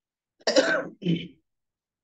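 Someone clearing their throat: a short two-part sound about half a second in, the second part quieter.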